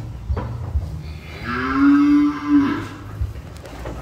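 A single cow moo lasting about a second and a half, steady in pitch and dipping slightly at the end.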